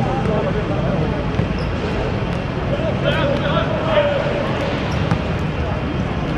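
Men's voices calling out across an outdoor hard-court football pitch over a steady urban hum, with a few sharp thuds of the ball being kicked on the hard surface.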